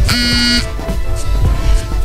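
A short electronic buzzer tone, about half a second long, just after the start, over steady background music.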